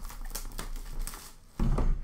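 Box cutter slitting the plastic wrapping on a cardboard card box, a run of quick scratchy crinkles and clicks, with a louder bump near the end as the box is handled.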